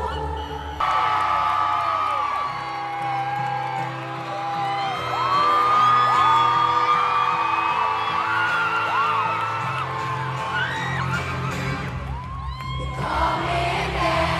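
Live arena concert music with held synth chords, and the crowd screaming and whooping over it; the cheering rises near the end.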